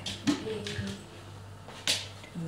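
A sharp click or knock near the end, with a smaller click near the start. A brief, low murmur of a woman's voice comes in the first second, over a steady low hum.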